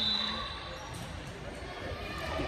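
Echoing ambience of a large gymnasium, with distant basketballs bouncing on the courts below. A brief steady high tone sounds in the first half second.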